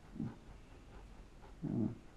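A man's short, low grunts or hums, twice: once just after the start and again, louder, near the end.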